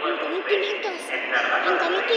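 A person talking, with a steady background hum of noise beneath the voice.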